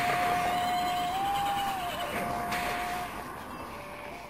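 Background music: a single melody line holding long notes, stepping up briefly and back down, then stopping about three seconds in as the music fades out.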